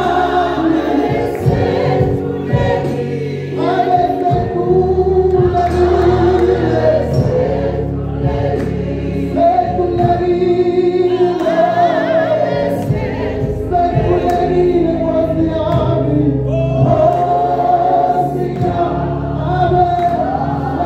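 Men's gospel choir singing in harmony through microphones, a lead voice over the group, with long held notes.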